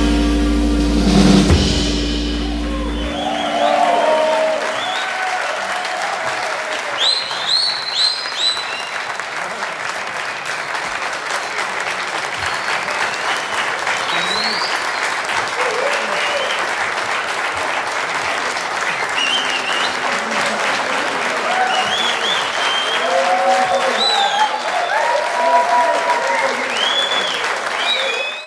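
The band's final held chord, with a low bass note, rings and stops about three seconds in. An audience then applauds with cheers and whistles.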